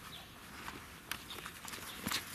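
Cheetah cub scuffling with a stuffed toy in dry grass and dirt: soft rustling with a few scattered light clicks.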